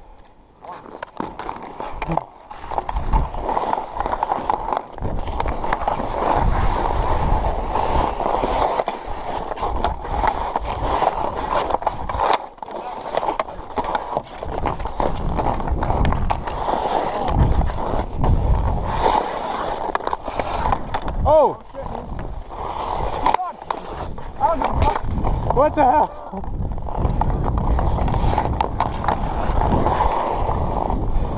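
Hockey skate blades carving and scraping across outdoor rink ice as the skater carrying the camera skates, a continuous rushing scrape with a low rumble under it.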